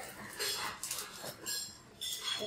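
Fabric back bandage rustling and scraping as it is pulled snug and fastened by hand, in a few short scratchy bursts.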